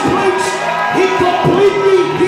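Music, with a man's voice amplified through a handheld microphone over it; the voice rises and falls in long, drawn-out lines.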